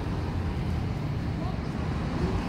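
Steady low rumble of outdoor traffic noise at a bus loop, with faint voices in the background.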